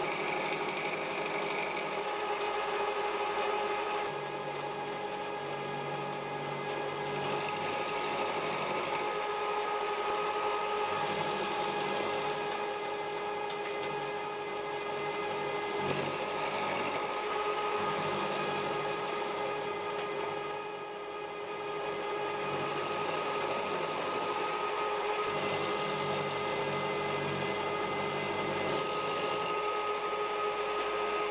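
A milling machine's end mill cutting a slot into a metal blank. The motor and spindle whine steadily under the rougher noise of the cut, which eases briefly about two-thirds of the way through.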